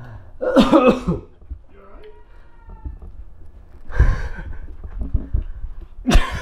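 A person laughing, then a short harsh cough-like burst about four seconds in, followed by a few low thuds.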